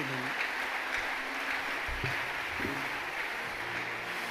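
Congregation applauding steadily, with faint voices underneath.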